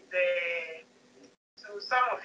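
Stray background audio from a video-call participant's unmuted line: one drawn-out, steady-pitched call lasting most of a second, then a brief dropout and then speech-like sound.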